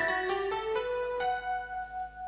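Electronic keyboard playing the opening melody of a live dangdut band's song: a slow line of held notes, a new one about every half second.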